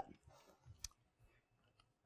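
Near silence: room tone with one faint, short click a little under a second in.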